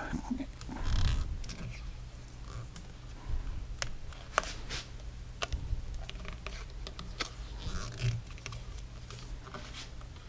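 Faint handling sounds of hands working on a rifle's barreled action in its stock: scattered light clicks and rustling over a low steady hum.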